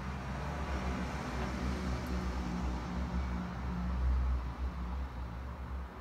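Low rumble of a motor vehicle engine, at its loudest a little past the middle and then easing off.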